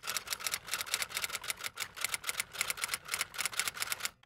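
Typewriter typing sound effect: a rapid, uneven run of key clacks, several a second.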